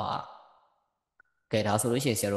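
A man's voice trails off into an audible breathy sigh that fades within about half a second. About a second of silence follows with one faint click, and then speech starts again near the end.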